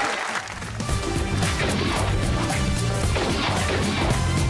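Show's closing theme music, starting about a second in with a deep bass line and a steady beat of hard, crashing percussion hits.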